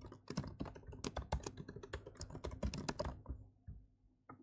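Typing on a computer keyboard: a quick run of key clicks that thins out about three seconds in.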